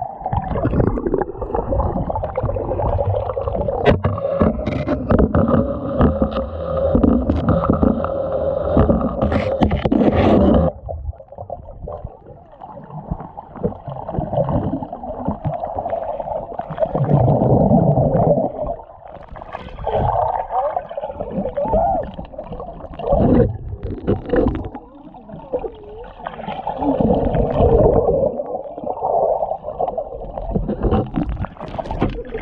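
Muffled sloshing and gurgling of swimming-pool water heard with the camera underwater, as swimmers move through the pool. It is busier and fuller for the first ten seconds or so, then drops suddenly to a quieter, dull wash that rises and falls.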